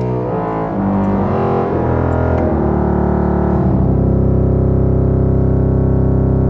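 Aeolian-Skinner pipe organ's 16-foot pedal tuba, a reed stop, played by the feet: a wall of sound with strong low reed tone. A few low notes follow one another, then one note is held through the end.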